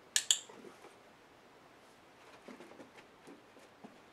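A dog-training clicker clicks once, a sharp two-part click-clack, marking the dog lying on its side with its head down in the play-dead position. Later come soft scattered taps as the dog moves on the carpet.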